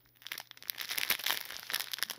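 Clear plastic packets of diamond painting drills crinkling as they are handled and squeezed in the hand: a quick run of small crackles, quiet at first and louder from about half a second in.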